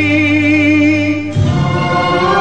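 Old Hindi film song playing: a long held note with vibrato over steady accompaniment. About a second and a half in, the music changes to a new passage.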